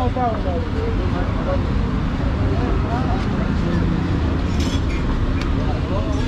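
Steady low rumble of busy street surroundings, with voices talking faintly in the background and a few light clicks near the end.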